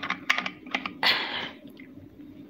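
A few light clicks in quick succession, then a short rustle about a second in: small handling noises.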